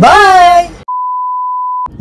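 Voices calling out a long, drawn-out farewell, then, after a brief silence, a steady electronic beep held at one pitch for about a second that cuts off abruptly.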